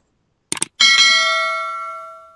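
Subscribe-button animation sound effect: a short burst of clicks, then a single bright bell ding that rings on and slowly fades.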